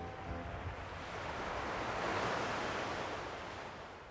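Ocean surf in a recording: one wave swells up and washes out, fading away, as the last notes of the music die off at the start.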